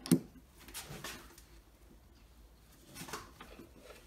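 A sharp click just as the sound begins, then a few faint clicks and taps from hands handling the metal parts of a wood lathe as a pen blank is locked between centres.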